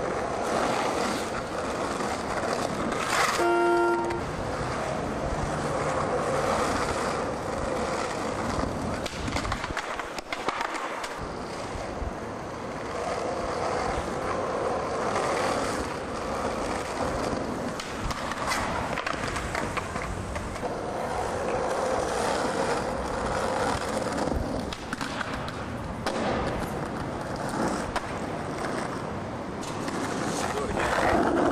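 Skateboard wheels rolling over street asphalt: a steady rolling rumble with occasional clacks of the board. A brief pitched tone sounds about three seconds in.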